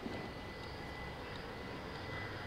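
Steady low background rumble with a faint, thin, steady high whine over it.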